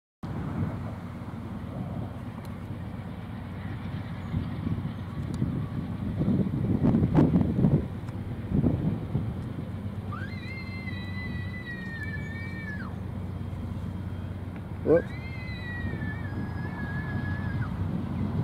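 Diesel locomotive air horn on a Norfolk Southern GE Dash 9-44CW, sounding two long blasts of a few seconds each, the second sliding up in pitch as it starts, over the steady low rumble of the approaching train.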